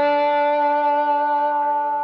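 Epiphone Casino hollow-body electric guitar played with a metal slide: a single note slid up to the D at the seventh fret of the G string and held, ringing steadily with a full set of overtones.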